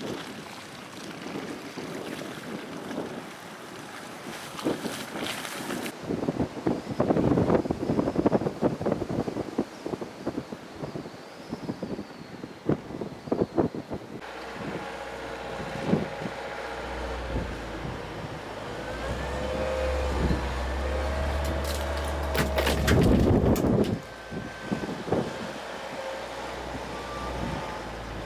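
Wind noise on the microphone over outdoor vehicle sounds. About halfway in, a wheeled loader's diesel engine runs steadily and grows louder as it approaches, with a louder burst shortly before the end.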